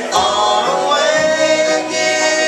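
Bluegrass band playing a song: three voices singing in harmony over strummed acoustic guitars, holding a long note about a second in.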